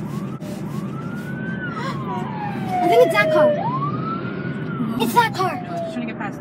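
A siren-like wail that rises and then slowly falls in pitch, twice, over the steady road noise of a car cabin. Brief voices come in around the middle and near the end.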